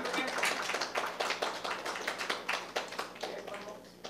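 A small audience clapping, the applause thinning out and dying away near the end.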